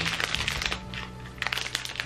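Scissors cutting into a plastic snack wrapper: crinkling of the film with a cluster of sharp snips about one and a half seconds in.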